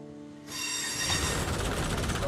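A held piano chord dies away. About half a second in, the loud rumbling noise of a train cuts in, with high-pitched steel wheel squeal over it.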